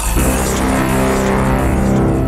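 A sustained electronic tone, rich in overtones, held steady and fading out near the end, of the kind laid under an animated logo.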